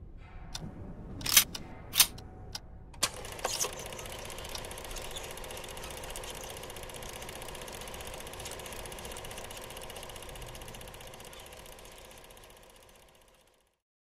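A few sharp clicks and knocks, then a film projector running with a steady, fast mechanical clatter and hiss that fades out near the end.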